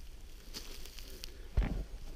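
Footsteps crunching and rustling on thin snow over dry leaves, with one louder step about one and a half seconds in.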